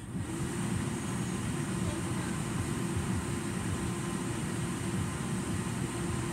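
Central air-conditioning blower coming on suddenly, then running steadily with a low hum and an even rush of air.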